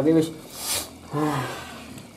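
A man's voice making two short wordless vocal sounds, one at the start and one about a second in. Between them comes a brief rasping noise.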